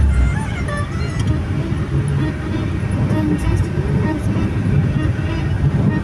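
A moving car's engine and road noise heard from inside the cabin: a steady low rumble, with music and voices over it.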